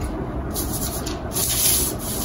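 Stiff brown pattern paper rustling and rubbing against the table as it is handled, with two brief brighter, hissier stretches.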